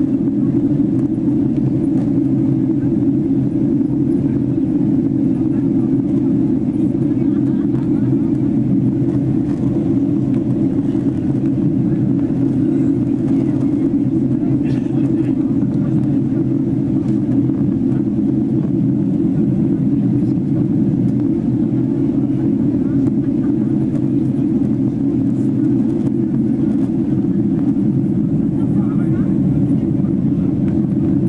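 Steady cabin noise of a Boeing 767-300ER in flight, heard from a window seat over the wing: the even, low drone of the jet engines and rushing air, unchanging throughout.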